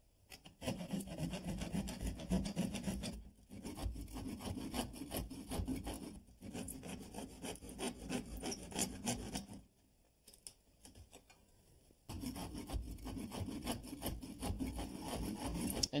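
Hand keyhole saw cutting through the wood lath behind old plaster, in repeated back-and-forth strokes. It stops briefly twice, then falls almost silent for a couple of seconds about ten seconds in before the sawing resumes.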